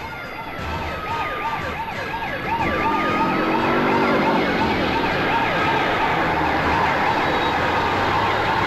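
Police siren in a fast, repeating rise-and-fall yelp, growing louder about two and a half seconds in as it approaches.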